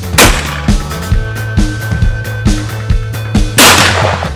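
Two shotgun shots from a Sabatti Sporting Pro over-and-under shotgun, one just after the start and one about three and a half seconds later, each with a short echo tail, over rock music with a steady drum beat.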